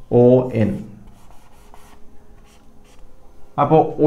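Marker pen writing on a whiteboard: a string of short, faint scratching strokes.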